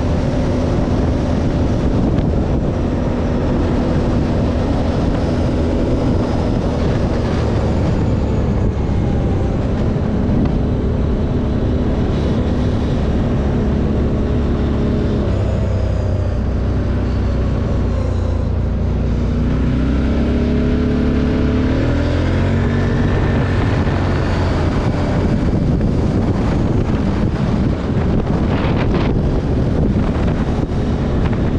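Motorcycle engine running under way, with wind rushing over the microphone. The engine note drops about a third of the way in, then rises in several upward sweeps in the second half as the bike accelerates again.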